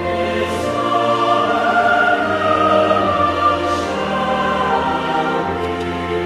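Church choir singing with pipe organ accompaniment, the organ holding sustained low notes beneath the voices.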